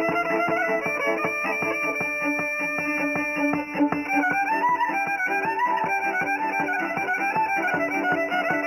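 Instrumental Serbian folk (izvorna) music: a violin carries the melody over a steady plucked-string accompaniment, with no singing.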